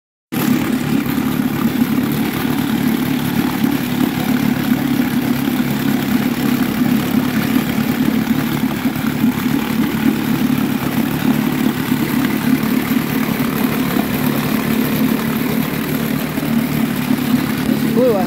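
A 1957 West Bend 7.5 hp two-stroke outboard motor running steadily at an even speed in a test barrel, its lower unit churning the water. It is running on a new head gasket after two snapped head bolts were repaired.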